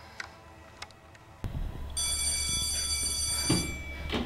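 An electronic school bell ringing: one steady, high, buzzing tone that starts about two seconds in and lasts nearly two seconds. It sounds over a low hum, with a soft thump near the end.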